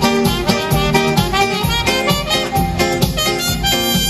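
Trumpet playing a melody live over keyboard accompaniment with a steady beat.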